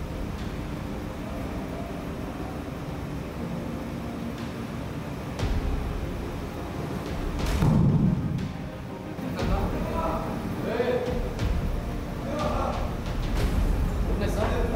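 Steady low background hum in a room, broken about eight seconds in by one heavy thump. Voices talking follow over the last few seconds.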